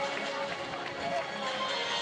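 Many runners' footsteps on pavement as a large pack passes close by, mixed with music over a loudspeaker and the voices of the crowd.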